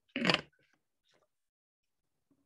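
A single brief clattering knock of handling noise close to the microphone, about half a second long, followed by a couple of faint ticks.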